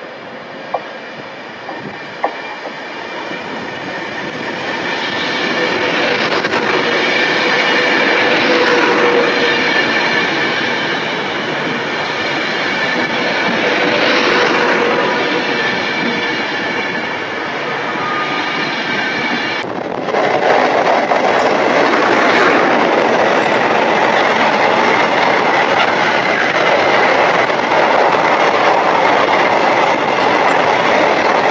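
Class 390 Pendolino electric train approaching and passing at speed, a swelling rush of wheel and motor noise with a faint steady whine. About twenty seconds in, the sound changes abruptly to a long container freight train rolling past, a steady noise of wagon wheels on the rails.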